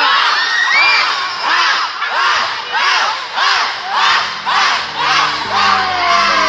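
A group of teenage girls shouting a team chant together, in a steady rhythm of about two shouts a second. Music comes in under it near the end.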